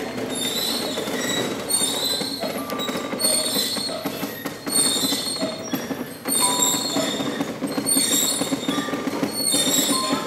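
Carved wooden automaton figures with their gear-and-lever mechanism running: a steady clattering and creaking, with a squeaky burst repeating about every second and a bit.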